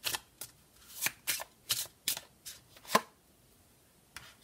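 A deck of Sibilla cards shuffled by hand, a quick series of about ten short card slaps and riffles, the loudest near the three-second mark, after which the shuffling stops.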